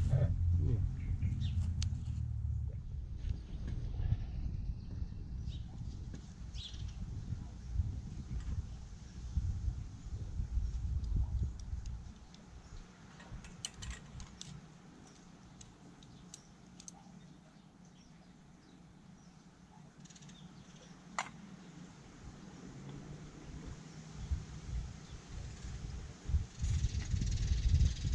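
Low rumble on the microphone with a few light metal clinks as camping cookware and a stove's wire grill are handled.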